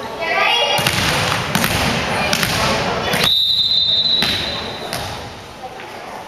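Spectators' voices and a few thuds echoing in a gym. About three seconds in, a referee's whistle blows one steady high note for about a second and a half, signalling the next serve.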